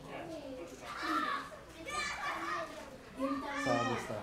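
Onlookers' voices chattering, with children's high voices calling out several times; no words are clear.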